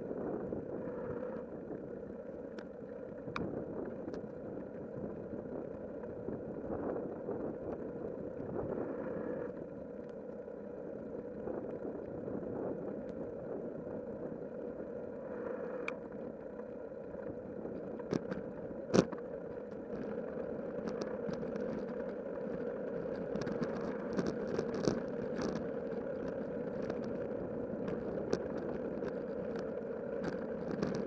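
Bicycle riding on an asphalt path, heard from a camera mounted on the bike: a steady rolling noise with scattered small clicks and rattles. There is one sharper knock about two-thirds of the way in, and the ticks come more often near the end.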